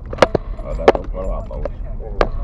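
Car cabin rattles and sharp knocks as the car drives slowly over a rough unpaved road, over a low road rumble, with three loud clacks, the loudest about a second in.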